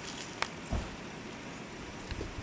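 Faint sounds of biting into and chewing grilled tortilla quesadillas: one sharp click a little under half a second in, then a soft thump, over low steady hiss.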